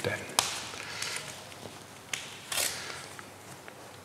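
A paper sticker sheet being handled as a sticker is peeled off its backing: a sharp tick about half a second in, another a little before halfway, and a short papery rasp just after.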